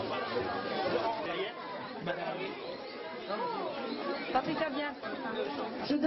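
Crowd chatter: many people talking over one another at once, close around the microphone.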